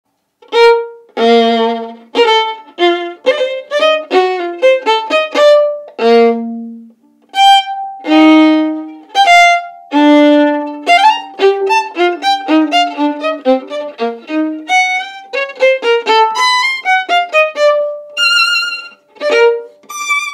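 Solo bowed violin playing a brisk passage of short separate notes, with a few longer held notes and a brief pause about seven seconds in.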